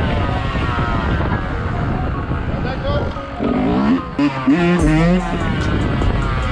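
Two-stroke Yamaha YZ125 engine running under a wheelie, mixed with background music that carries a sung vocal, the singing strongest in the second half.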